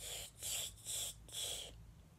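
A person's breathy, unvoiced puffs, four in an even rhythm about twice a second, marking the beat of the routine under her breath.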